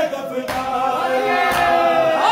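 Crowd of men chanting a Punjabi noha lament together in long held lines, with a sharp slap of hands on bare chests (matam) about half a second in.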